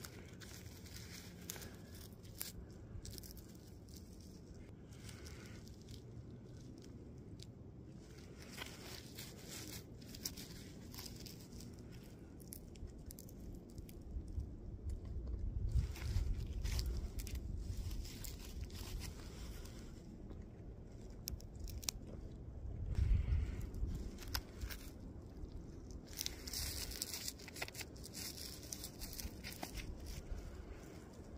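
Rustling, scraping and crunching of a work glove handling and turning a chunk of quartz ore close to the microphone, with two louder low rumbles around the middle.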